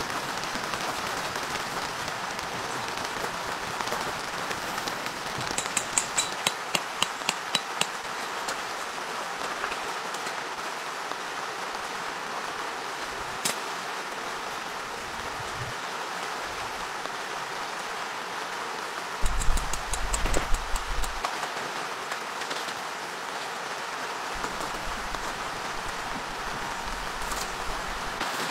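Steady rain, with a quick run of about a dozen sharp clicks about six seconds in and a cluster of knocks and handling thumps around twenty seconds in, from work on the awning and its poles.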